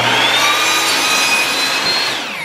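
Ryobi sliding miter saw running at full speed, its blade trimming a thin sliver off a wooden board. The motor's high whine rises over the first second or so as it comes up to speed, holds steady, and starts to fall at the very end as the trigger is released.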